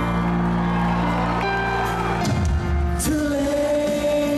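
Live concert music: held keyboard chords with a singer, a deep bass coming in a little past halfway, and a long held sung note near the end.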